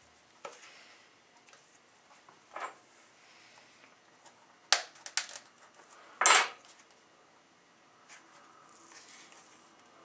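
Handling and opening the cardboard folder that holds a replacement compression-driver diaphragm on a wooden workbench: soft rustling with a few sharp clicks about five seconds in and one louder clack with a brief high ring about six seconds in.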